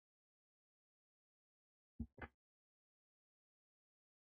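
Near silence, broken about two seconds in by two brief soft sounds a fraction of a second apart.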